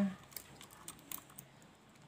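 Several light plastic clicks and taps as a wiring connector is pushed onto the back of a motorcycle headlight bulb.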